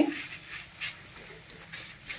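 A steel spatula scraping and stirring sautéed fenugreek leaves around a metal kadhai, a few faint strokes spaced well apart.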